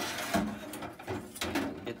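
Short knocks and rattles of hard objects being handled and set down in a plastic tub.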